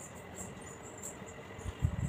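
Faint, irregular high-pitched chirps, a few times a second, over a low steady hiss, with a few low thumps near the end.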